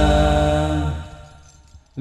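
A group of male voices of an Al-Banjari sholawat ensemble holding the closing note of an Arabic devotional chant together, with a steady low tone beneath. The note fades out about a second in, leaving near silence.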